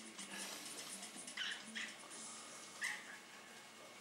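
A small puppy gives three short, high-pitched yips, about a second and a half, two seconds and three seconds in. It is heard through a television's speaker.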